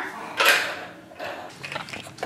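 Small plastic toy car handled and pushed over a laminate floor: a brief scrape about half a second in, then a run of light clicks and rattles.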